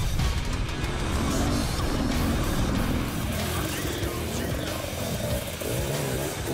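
Enduro dirt bike engine revving up and down as it climbs rough rocky ground, heard close up under background music.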